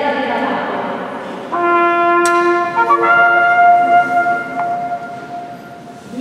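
A voice for about the first second and a half, then held musical notes: a lower note, then one an octave higher held for about two and a half seconds before fading.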